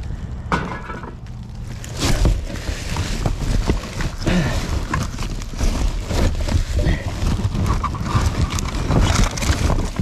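Rubbish being rummaged through by hand inside a dumpster: plastic bags and packaging crinkling and rustling, with irregular knocks and clatter of loose objects. It is quieter at first and becomes busy about two seconds in.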